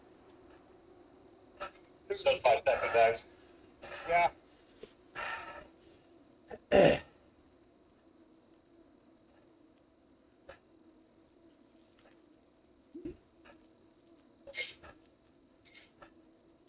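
Short bursts of laughter and vocal sounds from riders on a voice chat, the loudest about seven seconds in, over a faint steady hum.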